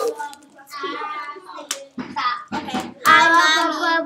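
Children's voices talking over one another, loudest about three seconds in, with a few knocks and taps from handling plastic cups around two seconds in.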